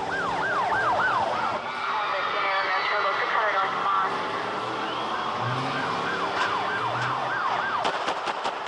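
Siren sounding in quick rising-and-falling yelps, about three a second, in two spells with a slower gliding wail between them.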